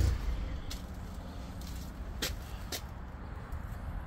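Ford F-150 pickup's engine idling: a loud low exhaust drone at the very start that drops almost at once to a faint steady rumble. A few light sharp clicks sound over it.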